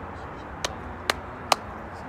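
Three sharp, short clicks, evenly spaced about half a second apart, over steady outdoor background noise.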